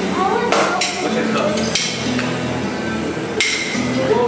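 Metal ice cream spades knocking against a hard counter or slab while a server works and tosses scoops: four sharp, ringing clanks spread over the few seconds, the last one near the end the most ringing.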